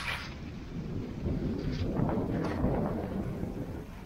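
Skis scraping across packed, groomed snow during a turn: a rough, rumbling noise that grows louder from about a second in and eases off near the end.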